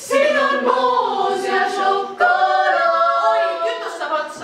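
Female a cappella vocal group singing held chords in close harmony, in two phrases with a brief break about two seconds in.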